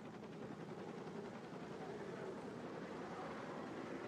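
Helicopter flying away in the distance, a steady engine-and-rotor noise.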